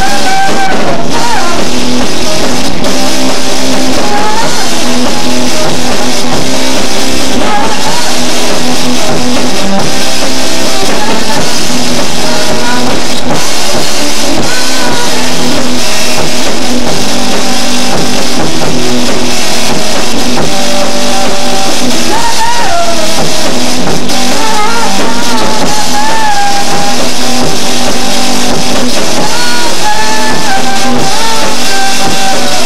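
Live rock band playing loudly: guitar over a drum kit.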